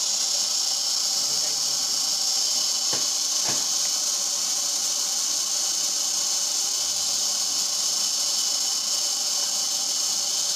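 Hongtuan automatic incense stick making machine running with a steady high hiss, with two light clicks about three seconds in.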